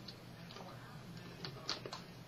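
A few faint, crisp crunches from biting and chewing a sandwich cookie, mostly in the second half, over quiet room hiss.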